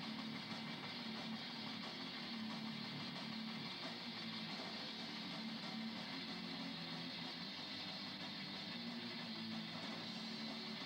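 Live rock band playing with electric guitar, a dense, steady wall of sound without breaks.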